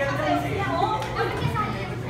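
Indistinct chatter of party guests with children's voices, no single speaker standing out.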